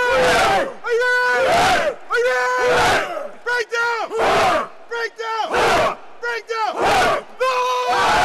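A team huddle of men shouting a chant together, a run of loud rhythmic shouts about one a second.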